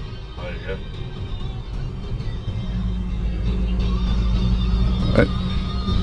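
Original valve AM car radio warming up, its sound swelling gradually over the car's road noise until it is playing by the end; a steady low hum comes in about halfway.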